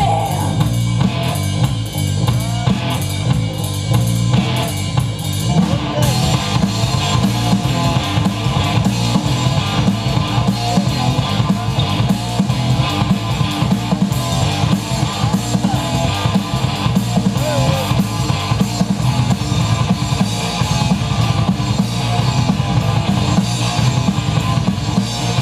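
Live rock band playing an instrumental passage: a loud drum kit with bass drum and snare drives it, with electric guitar. About six seconds in, the sound turns suddenly brighter and fuller.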